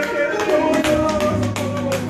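Live church worship music played through the sanctuary's sound system, with sharp percussive strikes in quick succession and a low held note coming in about a second and a half in. A woman's voice is heard over the microphone.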